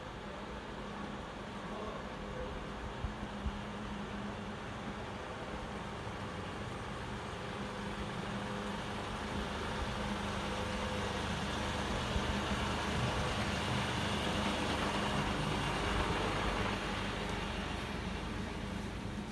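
Small truck's engine running as it drives slowly up a narrow street toward and past, its sound swelling to a peak past the middle and easing off near the end.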